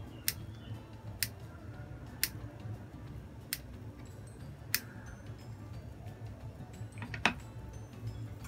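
Kitchen scissors snipping into a fried tofu puff, about six sharp snips spaced one to two seconds apart.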